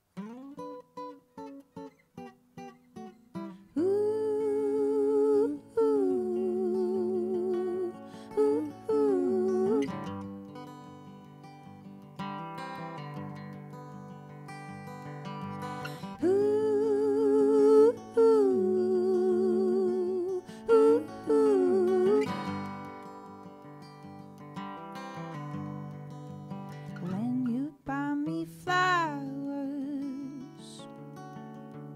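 Acoustic guitar picking a slow song intro. About four seconds in, voices join in wordless sung harmony with vibrato, in two long phrases, with the guitar carrying on between them.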